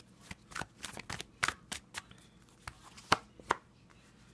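A deck of tarot cards handled and shuffled by hand: a run of quick, irregular card clicks and flicks, with two sharper snaps near the end as a card is drawn and laid down.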